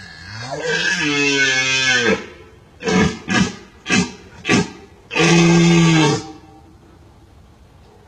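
Red deer stag roaring in the rut. A long roar rises in pitch at the start, then come four short grunts and a second, shorter roar.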